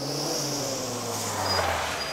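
A small convertible car's engine easing off as it pulls up, its pitch slowly falling, with tyre hiss on the road.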